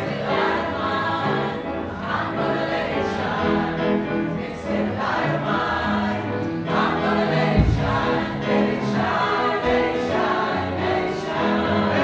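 Mixed adult choir of women's and men's voices singing together in parts, notes held and changing in chords. A brief low thump a little past halfway.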